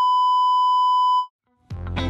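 A steady, electronic beep tone held for just over a second, then cut off. Music with a beat comes in near the end.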